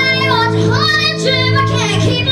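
An 11-year-old girl singing lead vocals with a live rock band, her voice bending up and down over a held band chord that lets go near the end.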